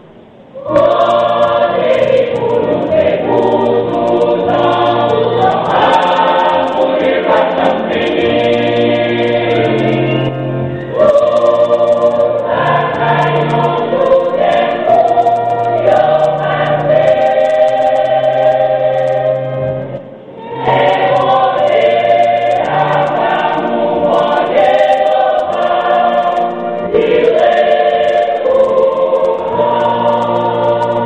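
Gospel choir singing over a bass line. The singing comes in about a second in and breaks off briefly near twenty seconds before the next phrase.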